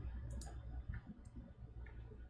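A few faint, scattered clicks from working a computer's mouse and keys, over a low steady hum.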